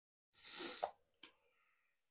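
Handling noise close to the microphone: a brief rustle that ends in a sharp click, then a second short click.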